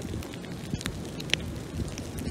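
Wood campfire crackling under a grill grate, with scattered small pops and one sharper one a little past halfway. Wind rumbles low on the microphone.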